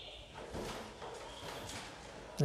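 Faint rustling and soft handling sounds of Bible pages being turned, with a brief louder rustle about half a second in and another near a second and a half.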